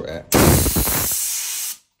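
A compressed-air blow gun gives a single loud blast of hissing air for about a second and a half, then cuts off sharply. The air is blowing rinse water out of the headset gap of a freshly washed bicycle frame.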